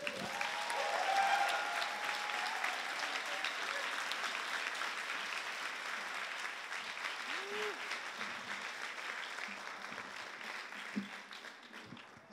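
Audience clapping in sustained applause, with a few cheering voices over it in the first couple of seconds; the clapping is loudest about a second in and slowly dies down toward the end.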